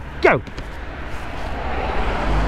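Road noise: a rushing sound that builds steadily over the second half, over a steady low rumble.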